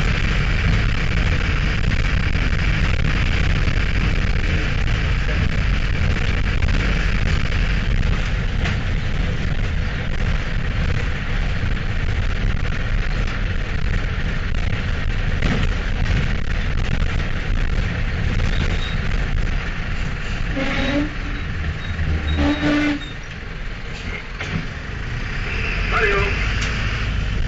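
Mercedes-Benz LO-914 minibus heard from inside while under way: its electronically injected OM 904 four-cylinder diesel runs steadily beneath road and body noise. Two short higher-pitched tones come near 21 and 23 seconds, after which the overall noise drops.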